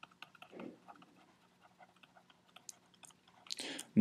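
Faint ticks and taps of a stylus on a pen tablet as words are handwritten, over a faint low steady hum; a breath is drawn near the end.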